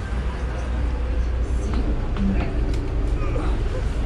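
City bus engine idling with a steady low rumble while the bus stands in neutral with the handbrake on, with faint voices and a few light knocks over it.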